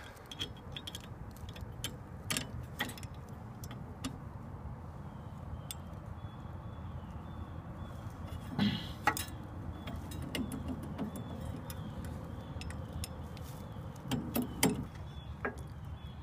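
Scattered small metal clicks and taps of hand work as a quarter-inch bolt is fitted through the drive shaft coupling of a Cub Cadet 125 garden tractor, over a steady low background rumble. A louder cluster of knocks and handling noise comes about nine seconds in and again a second or two before the end.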